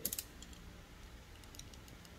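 Faint small clicks and scratches from a utility-knife blade picking at the edge of a peelable rubber spray coating (Full Dip) on car bodywork, with a few sharper clicks right at the start.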